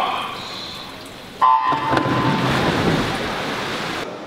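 Electronic starting beep about a second and a half in, after a brief hush. It is followed at once by a crowd cheering and the splash of swimmers diving in, echoing around the pool hall.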